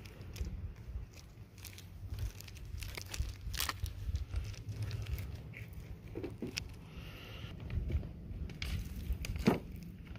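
Rubber-coated work gloves handling chunks of copper-sulphide rock, with rustling and a few sharp clicks as the pieces knock together, the loudest near the end, over a low rumble.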